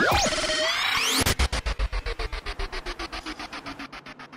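Synthesized sound effect of shrinking: swirling, sweeping whistle-like glides for about a second, then a fast pulsing throb, about eight pulses a second, over a slowly falling tone, fading away near the end.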